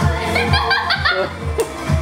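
Music playing with a steady bass beat, and a person laughing in a run of short bursts in the first half.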